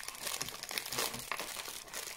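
Crinkly wrapping material handled by hand: a dense run of small crackles and rustles.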